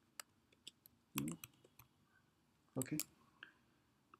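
Several faint, scattered clicks of a computer mouse and keyboard, with a louder short sound about a second in and a spoken 'okay' near the end.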